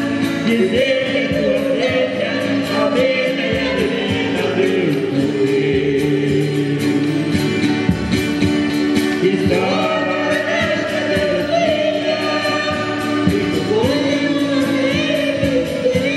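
Live Brazilian música raiz band playing: a woman singing into a microphone over accordion and acoustic guitars, heard through the PA. The sung phrases come in waves, with the accordion holding steady chords underneath.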